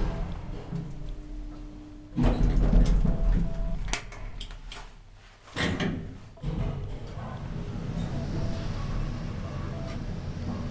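Old Otis traction elevator starting a trip: a loud, heavy thud and clatter of the doors about two seconds in, sharp clicks a few seconds later, then the car running with a steady sound.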